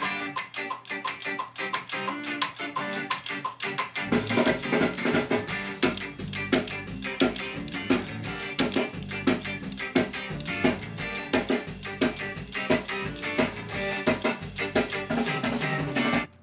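Electric guitar, a Gibson Les Paul, playing choppy ska offbeat chords: short, sharply cut-off strums in a steady rhythm. About four seconds in, a deeper bass and drum part joins underneath.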